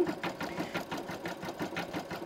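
Embroidery machine stitching out a bean-stitch (triple stitch) outline, the needle running in a quick, even rhythm of strokes.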